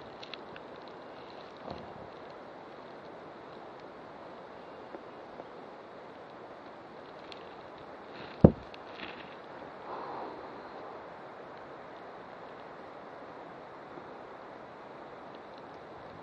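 Steady outdoor hiss of wind on the microphone, with one sharp knock about eight and a half seconds in as something strikes the action camera close up.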